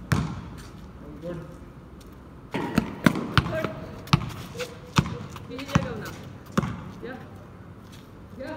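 Basketball bouncing on a concrete court: one sharp bounce at the start, then a run of bounces from about three seconds in, first quick (about three a second), then roughly one every second. Players' short calls come between the bounces.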